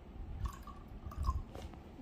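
A few faint drips of water into a glass mug, with small knocks of handling at the table.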